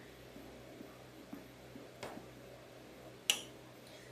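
Quiet kitchen room tone with a few faint ticks and one short, sharper click about three seconds in: small handling sounds from a stirring utensil and cake pop stick at a pot of melted chocolate.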